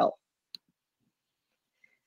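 A single short click about half a second in, from the computer as the presentation slide is advanced, just after the last word of speech.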